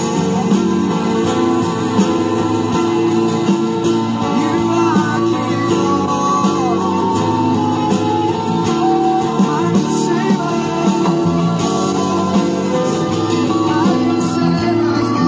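Church worship music: guitar-led accompaniment with a congregation singing.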